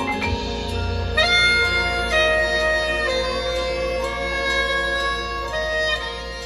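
High school marching band playing: winds hold sustained chords that move to a new chord about every second, over a low bass that comes in just after the start, with a louder entry about a second in.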